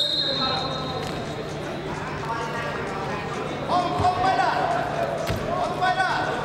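Referee's whistle blown once to start a wrestling bout, a single high steady blast that fades out in the hall over about a second. Then voices shout from the mat side, with two dull thumps as the wrestlers engage.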